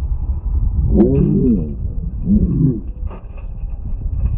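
Wind rumbling on the microphone, with a sharp knock about a second in, followed by two short, deep calls that waver in pitch, the second about a second after the first.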